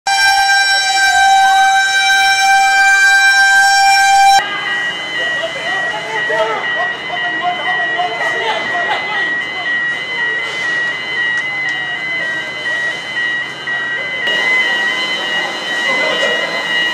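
Fire engine siren and horn: a steady, buzzy horn tone with a wail sliding up and back down under it, cut off suddenly after about four seconds. Then voices, with a high-pitched alarm beeping rapidly and steadily over them.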